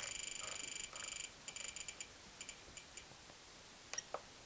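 Spektrum DX8 transmitter beeping as its scroll roller is turned: a fast run of high beeps that breaks up about a second in into separate beeps and stops about three seconds in. A single click comes near the end.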